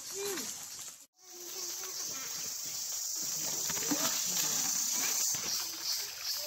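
A steady, high-pitched insect chorus, with faint voices underneath. The sound cuts out for a moment about a second in.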